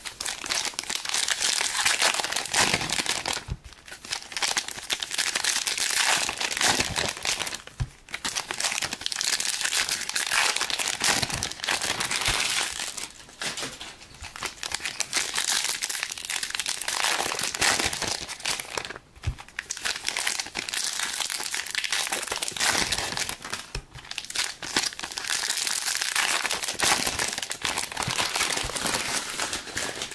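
Foil wrappers of Panini Prizm trading card packs crinkling and tearing as packs are opened one after another. The sound comes in long stretches broken by short pauses every few seconds.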